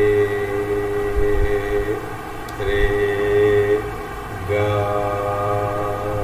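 Three long held musical notes with short gaps between them, the last one higher: the sa-re-ga notes of an Indian classical sargam being sounded.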